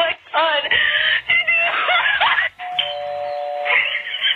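Comedy sound effects and music laid over the clip: warbling, voice-like squeaks that bend up and down in pitch for about two and a half seconds, then a steady held tone with a hiss over it until near the end.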